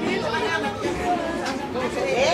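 Several people chattering at once, their voices overlapping and indistinct.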